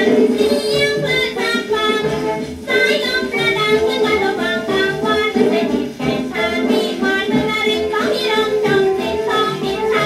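An old Thai popular song played from a shellac 78 rpm record: a woman sings the melody over a small band's accompaniment.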